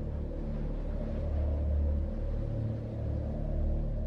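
Low, sustained drone of dramatic background music, with held deep notes and no clear beat.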